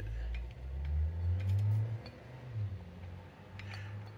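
Faint metallic clicks from a 1965 Thunderbird rear axle shaft being rocked by hand in its worn wheel bearing, the play of a loose, dried-out bearing, over a low rumble that swells during the first two seconds.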